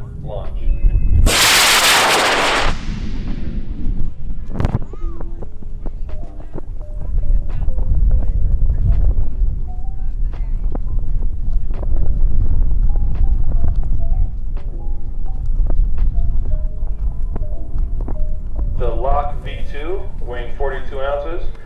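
A high-power rocket's Aerospike J615 motor igniting about a second in and burning with a loud rushing roar for about a second and a half, then fading as the rocket climbs away. A single sharp crack follows a few seconds later, over steady wind rumble on the microphone.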